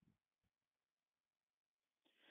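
Near silence: a pause in the narration with no audible sound.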